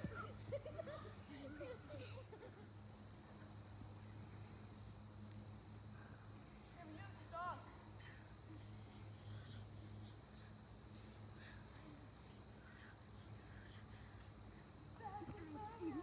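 Quiet outdoor ambience: a steady high-pitched insect chorus and a low hum that fades out about ten seconds in, with faint, distant children's voices now and then.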